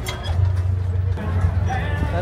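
Indistinct voices of people close by over a steady low hum, with music in the background.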